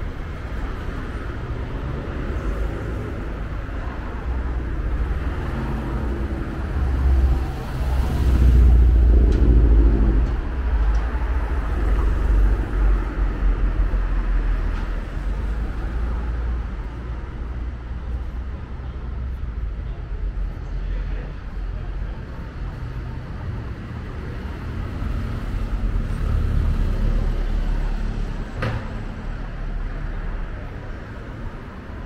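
City street traffic: motor vehicles passing, the loudest going by about eight to ten seconds in. A brief sharp click near the end.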